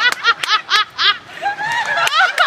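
A person laughing in a quick run of short pitched "ha" syllables, about four a second, dying away after a second and a half.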